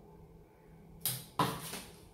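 Pruning shears cutting branches on a bakul (Spanish cherry) bonsai: two sharp snips about a third of a second apart, about a second in.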